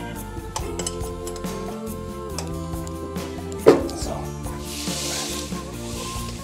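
Background music with steady tones, over metallic clinks of steel parts as a reel cutting unit is fitted to a ride-on greens mower; one sharp metal clank a little past halfway is the loudest sound.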